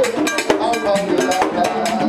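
Haitian Vodou ceremonial music: a man sings into a microphone over hand drums and a ringing metal percussion strike keeping a steady rhythm.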